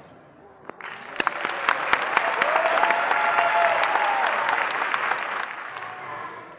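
Audience applauding once the band stops: the clapping starts about a second in, swells, and dies away near the end. A voice calls out over the clapping in the middle.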